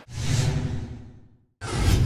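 Broadcast transition sound effect: a whoosh with a deep rumble that swells and fades away over about a second and a half. After a brief silence, a second bass-heavy whoosh hits near the end.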